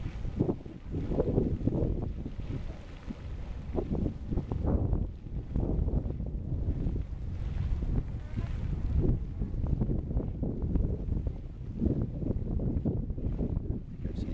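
Wind buffeting the microphone: a low, uneven rumble that swells and drops in gusts.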